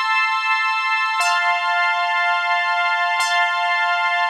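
4OSC software synthesizer playing a basic poly patch: a looped four-bar chord progression of sustained high chords, one chord per bar, changing to a new chord about a second in and again about three seconds in.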